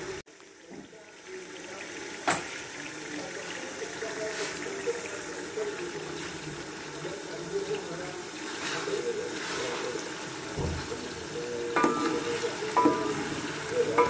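Chicken pieces and liver frying in oil in an aluminium pot, a steady sizzle, stirred with a wooden spoon, with a single sharp click about two seconds in.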